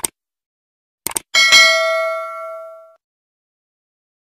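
Subscribe-button animation sound effect: a mouse click, a quick double click about a second later, then a bright notification-bell ding that rings and fades over about a second and a half.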